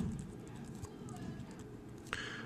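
A pen writing on paper: faint scratches and light taps of the tip against the sheet, over a low rumble of handling noise.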